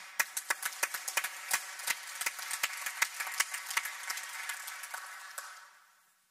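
Audience applauding: many hands clapping in a small hall, the claps dense at first, then thinning and fading out about five and a half seconds in.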